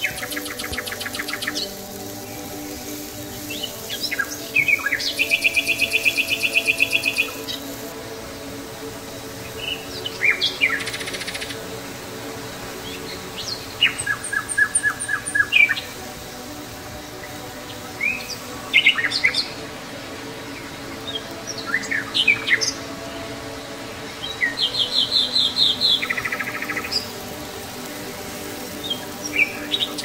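Birds chirping: repeated bursts of fast, evenly spaced trills and short chirps, some high and some lower, coming every few seconds over a soft steady drone.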